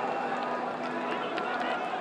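Stadium crowd noise: many football fans' voices blending into a steady din.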